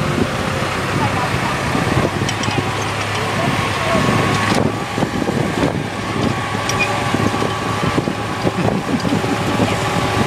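Farm tractor engine running at a steady speed as the tractor drives along, a constant low hum through the whole stretch.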